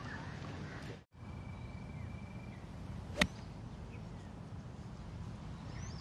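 A golf club striking the ball on a fairway approach shot: a single sharp crack about three seconds in, over a quiet outdoor background.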